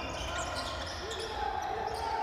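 A basketball being dribbled on a hardwood court in a large gym, over a steady low arena hum, with faint voices in the hall.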